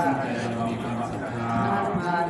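A voice intoning Thai Buddhist dharma verse in long, held notes.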